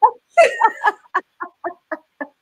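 Women laughing: a burst of laughter, then a run of short 'ha' pulses about four a second through the second half.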